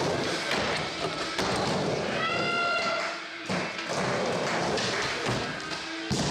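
Skateboard riding a mini ramp: continuous wheel noise on the ramp surface with repeated thuds and taps from the board and trucks. A brief high-pitched tone sounds about two seconds in.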